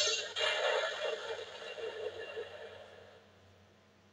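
Buzz Lightyear Power Blaster talking action figure's built-in speaker playing an electronic sound effect: a harsh burst that cuts off a moment in, followed by a warbling tail that fades away over about three seconds.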